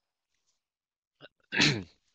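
A man clears his throat once, short and loud, near the end, after a pause and a faint click.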